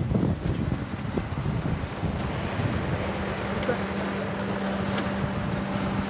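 Wind buffeting the microphone outdoors: a low rumble with hiss. A steady low hum joins about halfway through.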